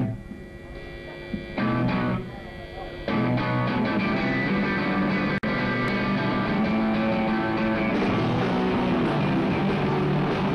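Rock band playing live, electric guitars to the fore: a short loud guitar stab between two quieter breaks, then from about three seconds in the whole band plays on steadily and loud.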